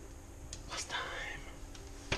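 A man's soft breathy whisper, about a second long, with a few small clicks just before it.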